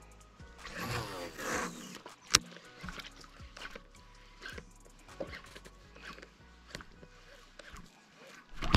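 A man's wordless, wavering vocal sound lasting about a second and a half, like a hum or groan. It is followed by one sharp click, then faint scattered ticks as a baitcasting reel is cranked.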